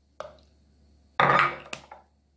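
Handling noise from a fish sauce bottle with a plastic flip-top cap. There is a faint click, then a short noisy clatter a little past halfway, and another small click.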